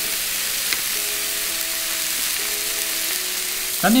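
Thin smashed ground-beef burger patties sizzling steadily as they fry in a hot nonstick frying pan.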